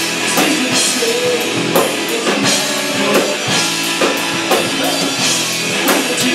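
Rock band playing live: electric guitars, bass and drum kit, with steady drum hits through dense guitar sound.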